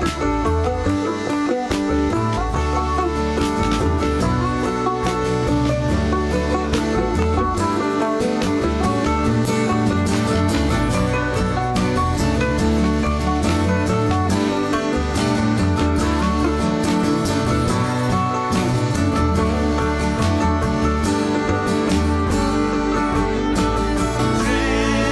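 Acoustic band playing an instrumental break in a country-folk song: strummed acoustic guitar and upright bass under a plucked string lead line, at a steady tempo.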